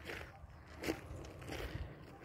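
Faint footsteps crunching on a loose crushed-stone gravel road, a few steps about half a second apart.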